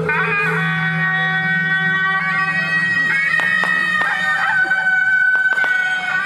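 Suona (Chinese double-reed shawm) procession music: held, nasal notes that step and bend in pitch, with a few sharp percussion strikes in the second half.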